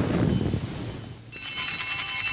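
Altar bells rung at the elevation of the chalice during the consecration at Mass. A bright ring of several high tones starts a little over a second in and rings on.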